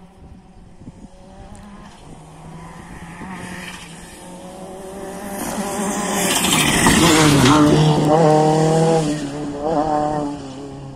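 Rally car on a gravel stage approaching and growing louder, with the engine loudest and gravel spraying from the tyres as it passes close, about two thirds of the way in. Near the end the engine revs rise in quick sweeps as it accelerates through the gears.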